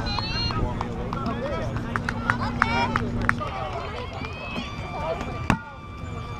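Players calling out across an open field, with a single sharp thud about five and a half seconds in as a rubber kickball is kicked.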